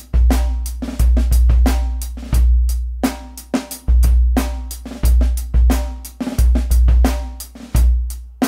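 Acoustic drum kit loop (kick, snare, hi-hat, cymbals) with a 60 Hz sine-wave sub-bass tone gated open by each kick drum hit. With the gate release turned up toward a full second, each sub note rings on long after its kick, often running into the next.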